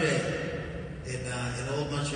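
A man talking into a microphone in a large hall, his voice carried by the sound system and too blurred for words to come through.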